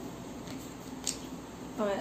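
Quiet room tone with a single short, sharp click about a second in. A woman's voice begins near the end.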